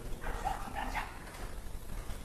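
A few faint, short animal calls in the first second.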